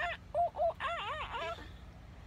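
A toddler imitating a monkey with a quick run of short, high-pitched "ooh"-like calls, about six or seven of them, each rising and falling in pitch, stopping about one and a half seconds in.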